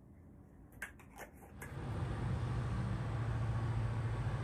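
Near silence with a couple of faint ticks, then from a little under halfway a steady low mechanical hum with a hiss sets in and holds.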